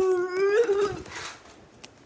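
A high-pitched, drawn-out vocal cry lasting just under a second, its pitch rising slightly toward the end, followed by a short breathy hiss.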